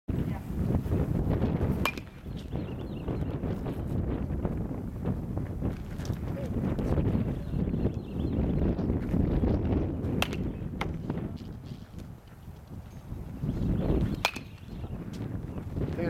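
A metal baseball bat hitting pitched balls: three sharp cracks several seconds apart, about two seconds in, ten seconds in and near the end, some with a short metallic ring, over a steady low rumble.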